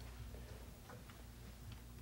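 A quiet pause: a steady low hum with a few faint ticks about a second apart.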